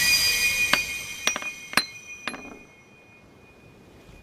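Glassy chiming sound effect from an anime soundtrack: a bright ringing sets in at once, then four sharp clinks follow about half a second apart, dying away about three seconds in.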